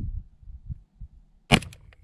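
A single AK-47 rifle shot, firing a 7.62×39mm round, sharp and loud, about one and a half seconds in. A few fainter clicks follow within half a second.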